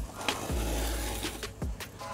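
Utility knife blade drawn along a steel ruler, slicing through a rubber car floor mat in one stroke lasting about a second.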